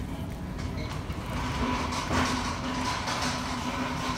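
Steady rumbling background noise of a big warehouse-store interior, with a faint steady hum under it.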